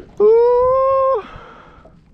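A man's drawn-out, excited "Åh!" cry, high-pitched and held for about a second, then low background noise.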